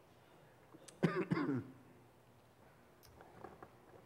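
A person clears their throat once, a short two-part sound about a second in. Faint clicks and rustling follow near the end.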